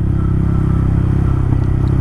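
Honda Grom's 125 cc single-cylinder four-stroke engine running steadily as the bike rides along, heard from the rider's seat, its note easing slightly after the midpoint.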